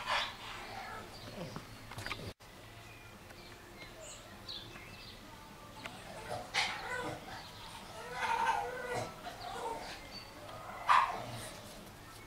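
A bulldog puppy whining and yelping in short bursts while squaring up to a cat, the loudest yelp near the end. Birds chirp faintly behind.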